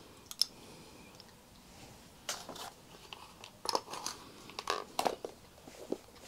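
Rimless spectacles being handled: a scatter of small clicks and taps from the metal arms and lenses, coming in small clusters, a couple just after the start and more through the second half.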